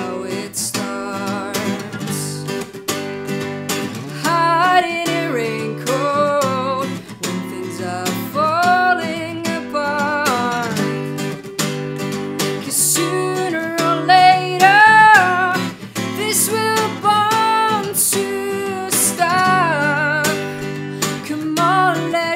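Steel-string acoustic guitar strummed in a steady rhythm, with a woman singing over it from about four seconds in.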